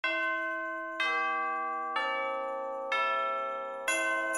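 Deep bell chimes struck once a second, four notes at different pitches, each ringing on and fading. Near the end, jingle bells come in with a brighter strike.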